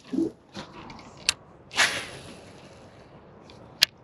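A fishing cast: a swish of rod and line paying out about two seconds in, fading over a second, with two short clicks, the sharper one near the end.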